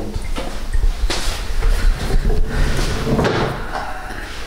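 Knocks and clunks of a sport motorcycle being handled at its rear paddock stand, several sharp knocks over a low rumble.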